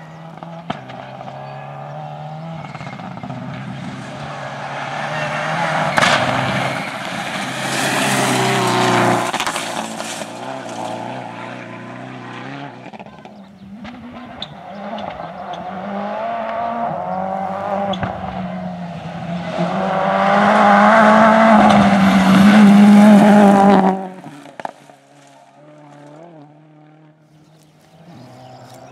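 Two rally cars pass one after the other at speed on a loose gravel road: first a Subaru Impreza, its engine rising and falling through gear changes with stones spraying, then a second car that grows louder and cuts off suddenly a few seconds before the end, leaving a faint distant engine.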